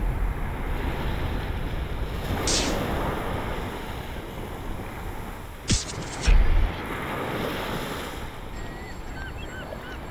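Sea surf washing onto a beach, a steady rushing noise that slowly fades, with wind buffeting the microphone in a couple of short gusts about six seconds in. A few faint chirps near the end.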